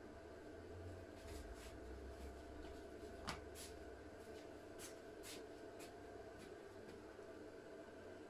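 Stanley BC25BS battery charger charging a car battery, giving a faint steady hum. A scatter of light clicks and taps runs over it, the sharpest a little over three seconds in.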